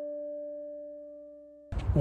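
An added bell-like chime tone with a few steady pitches, slowly fading away, cut off sharply about 1.7 s in and replaced by a moment of outdoor background noise.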